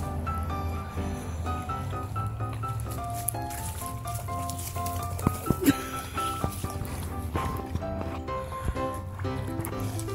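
Background music: a melody of short stepping notes over a steady low bass. A few sharp knocks come about halfway through.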